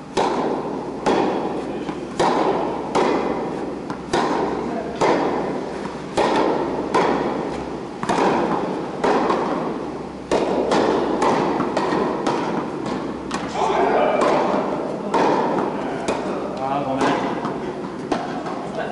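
Tennis balls struck by rackets and bouncing on an indoor hard court during a doubles rally: sharp pops about once a second, each echoing in a large hall.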